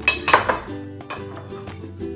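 Ceramic serving bowls clinking and scraping against each other on a countertop as one is picked up, a short clatter in the first half-second, over steady background music.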